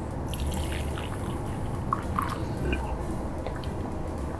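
Brewed tea being poured from a glass French press into a small glass mug: a steady trickling pour of liquid.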